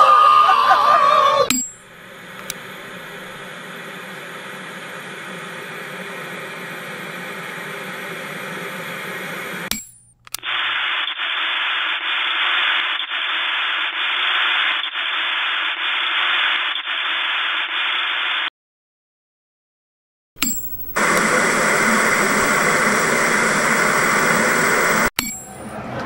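A montage of electronic noise effects. Singing fades out at the start. A low hum slowly swells until about ten seconds in, then gives way to a muffled static hiss with faint regular ticks. After about two seconds of dead silence, a loud, bright static hiss returns.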